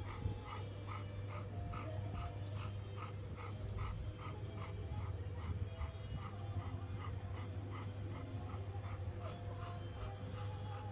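Golden retriever whimpering in short, evenly spaced sounds, about three a second, over background music.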